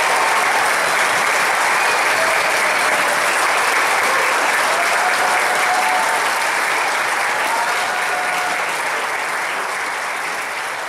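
Audience applauding, steady at first, then slowly dying down in the second half.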